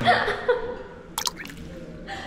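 A short voice sound, then a sharp double click a little over a second in, with little else after.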